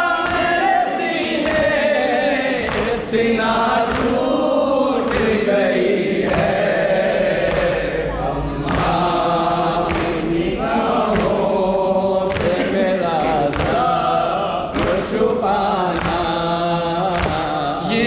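Men singing a Muharram lament (nauha) in chorus, led through a microphone, with matam hand strikes on the chest keeping a steady beat under the singing.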